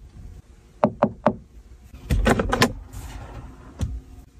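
Hand knocks and clunks on a car's interior dashboard and glove compartment: three sharp taps in quick succession about a second in, a heavier cluster of clunks around two seconds as the glove box is worked open, and one more knock near the end.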